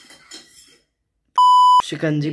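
Censor-style bleep: a single loud, steady, high electronic beep lasting about half a second, starting about a second and a half in after a brief moment of dead silence.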